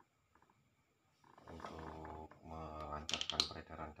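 Faint small clicks for about the first second, then a person speaking in Indonesian for the rest.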